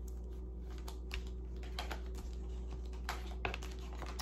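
Tarot cards handled and shuffled in the hands: a scattering of light, irregular clicks and taps of card edges, over a steady low hum.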